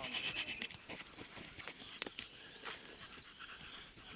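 Steady high-pitched insect chorus, with faint scattered ticks and a single sharp click about two seconds in.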